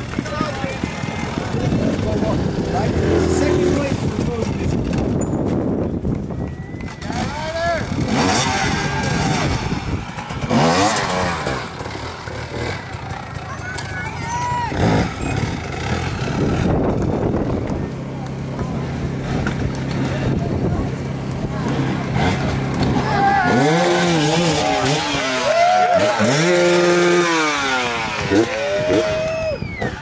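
Dirt bike engine revving in repeated rises and falls as it is ridden over logs and rocks on a slick hard enduro course, with the revs sweeping up and down most strongly near the end. Spectators' voices and calls mix in.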